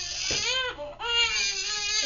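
Newborn baby crying: a short cry, then a longer, higher wail about a second in.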